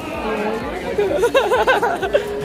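A teenage boy laughing in quick repeated bursts from about a second in, over background chatter of other voices.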